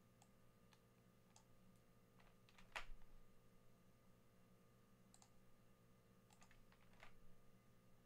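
Near silence with faint, scattered clicks of a computer mouse and keyboard, about a dozen in all, the loudest about three seconds in, over a low steady hum.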